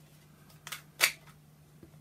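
Tarot cards handled in a shuffle: a faint click, then one sharp card snap about a second in as a card comes out of the deck onto the cloth-covered table. A faint steady low hum runs underneath.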